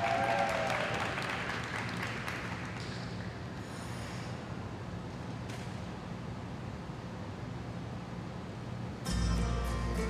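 Light applause from a small audience in a large ice arena, fading out over the first two seconds into a steady arena hum. About nine seconds in, the skater's program music starts suddenly.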